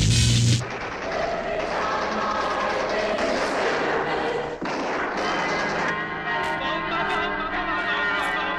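A rock band track cuts off abruptly about half a second in and gives way to a dense peal of ringing bells that carries on to the end.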